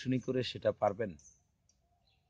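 A person speaking for about the first second, then a pause of near silence.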